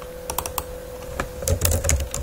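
Computer keyboard typing: a few separate key clicks, then a quicker run of keystrokes near the end as a short word is typed. A steady faint hum runs underneath.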